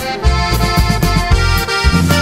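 Norteño song in an instrumental passage: an accordion plays the melody over a bass line and a steady beat, with no singing.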